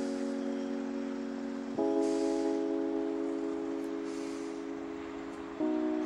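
Slow background music of held chords, which change to a new chord about two seconds in and again near the end, each fading gradually between changes.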